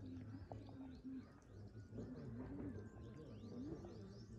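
Faint outdoor birdsong: several small birds giving quick, high chirps, over a low tone that comes and goes beneath them.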